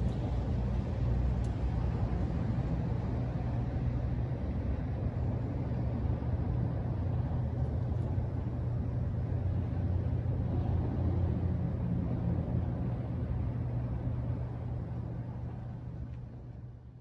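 Steady low outdoor rumble with a faint hum, without distinct events, tapering off near the end.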